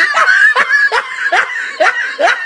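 A person laughing in short, high-pitched bursts, about two or three a second.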